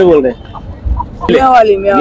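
A hen being held and handled, clucking: a short call at the start and a longer call from about halfway through.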